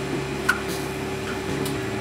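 3D printer extruder and hotend cooling fans running with a steady hum, with a sharp click about half a second in and a fainter one near the end: the extruder skipping as the very soft TPU filament blocks.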